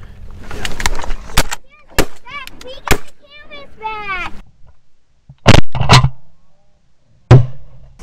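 Shotgun shots fired at canvasbacks passing overhead: a few sharp blasts in the first three seconds, then three louder ones in the second half, with the last coming a little after seven seconds.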